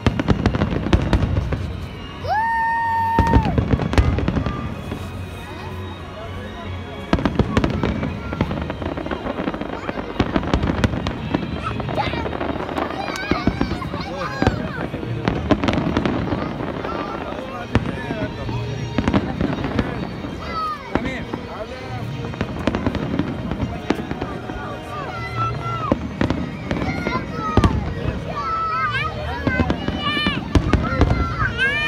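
Aerial fireworks display going off: a dense, continuous run of bangs and crackling bursts, heaviest in the first few seconds, with the voices of spectators close by.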